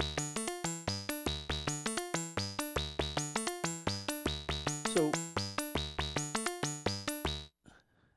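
Modular synthesizer sequence: a fast run of short, sharply attacked pitched notes through Oakley Journeyman filters, each note snapped open by the Oakley ADSR envelope in slow mode with its decay turned up. The sequence stops abruptly near the end.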